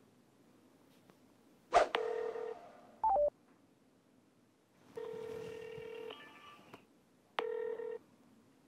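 Telephone ringback tone heard from a mobile phone as an outgoing call rings: a steady buzzing tone in three pulses of about a second each, with a short falling beep between the first two.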